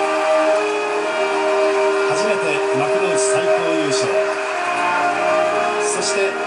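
A band holding long, steady notes in a slow piece, with a man's voice faintly underneath.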